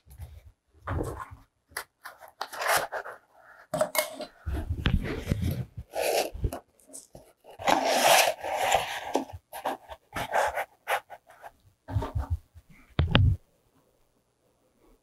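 Cardboard and paper being handled, rubbed and shifted on a cutting mat, in irregular bursts of rustling and scraping with small knocks.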